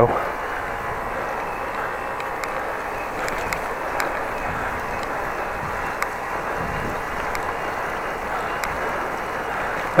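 Steady rushing noise of a bicycle being ridden: wind and tyres rolling on wet pavement, with a few faint ticks.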